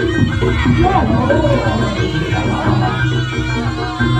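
Live Javanese jaranan ensemble playing continuously: a steady pulse of drums and keyboard under a wandering, gliding melody line.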